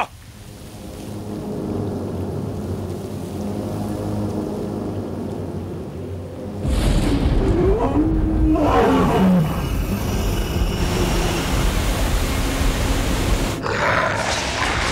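Dramatic film score swelling with a sustained drone, then about seven seconds in a sudden loud rush of noise and deep rumble breaks in as the palm strike is launched, with a drawn-out roar that rises and falls in pitch over it; the dense rushing noise carries on to the end.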